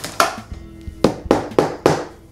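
A fist knocking on the firm padded shell of a guitar soft case, testing how protective it is: one knock, then four quicker knocks about a second in.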